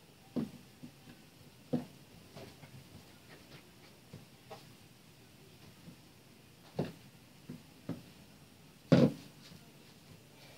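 Plastic rolling pin rolling out bun dough on a work surface, with scattered light knocks and taps as it rolls and is handled, and a louder knock near the end.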